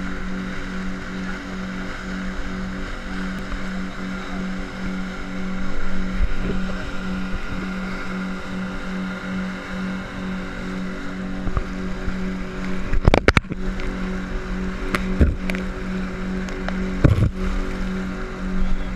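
Boat outboard motor running steadily at speed, its hum pulsing, over the rush of spray and water along the hull. A few sharp knocks in the last third as the hull slaps into waves.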